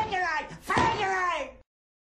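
A man angrily shouting the same word twice in German, each shout falling in pitch. The sound cuts off abruptly about one and a half seconds in, leaving silence.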